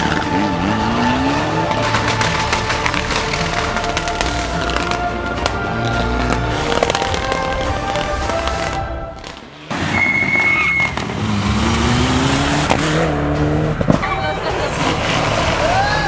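Rally cars driven flat out, engines revving up through the gears in repeated rising climbs. The sound drops away suddenly about nine seconds in, then another car comes through revving hard.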